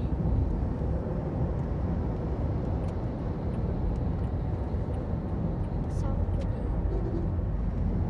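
Steady road noise inside a car's cabin at highway speed: an even low rumble of tyres and engine heard through the closed windows.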